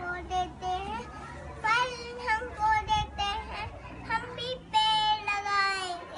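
A young boy reciting a rhyme in a sing-song voice, in short phrases, with a long drawn-out note near the end.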